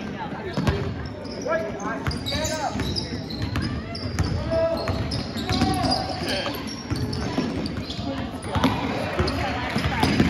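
Basketball bouncing on a hardwood court in repeated sharp knocks as players dribble, with spectators' voices calling out over it.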